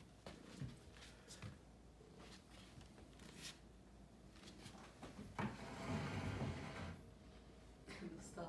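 Faint knocks and scraping of a clear plastic container on a tile floor as a cat noses and paws into it, with a louder rustling scrape lasting over a second about five and a half seconds in.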